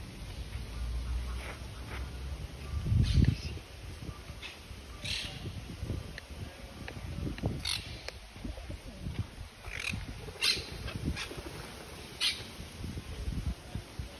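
Short, sharp bird calls repeat every second or two over a low rumble, which is loudest about three seconds in.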